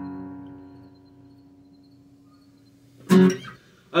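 The last strummed chord of an acoustic guitar ringing out and fading away over about a second into near quiet. A short sharp sound cuts in about three seconds in.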